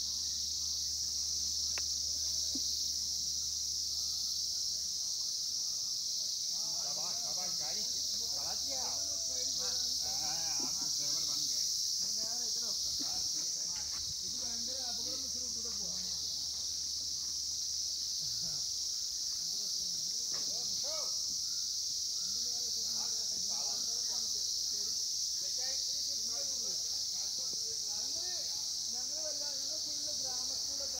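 A steady, high-pitched insect chorus, like crickets, runs unbroken throughout. Faint voices are heard talking in the background now and then.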